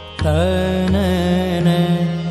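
Hindustani devotional kirtan in raag Malhaar: a male voice enters a moment in with a short upward slide and holds a sustained, ornamented note without words. Underneath are a steady low drone and a few light drum strokes.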